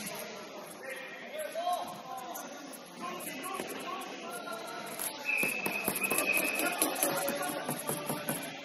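Indoor futsal play in a large hall: players' voices and calls, with music in the background and the ball being struck and bouncing on the wooden court. About five seconds in, a high steady tone is held for over a second, amid a run of sharp knocks.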